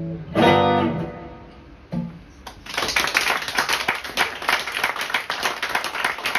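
A final chord on a Godin 5th Avenue archtop guitar rings out and fades, followed by a single soft low note. About two and a half seconds in, an audience starts applauding.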